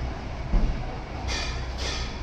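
Hands handling an opened scooter gearbox casing and an oily rag on a workbench: a dull thump about half a second in, then two short rustling scrapes, over a steady background rumble.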